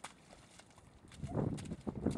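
Footsteps squelching through deep mud with a laden wheelbarrow being pushed along a muddy track, quiet at first and turning into louder, rough, uneven steps about a second in.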